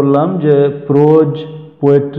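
Only speech: a man talking in Bengali, with some long, drawn-out syllables.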